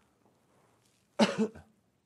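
A man coughs once, a little over a second in: a single short, sharp cough.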